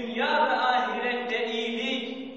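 A man's voice chanting a melodic religious recitation, holding long wavering notes rather than speaking.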